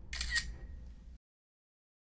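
Camera shutter click, quick and sharp, heard once as the still photo appears.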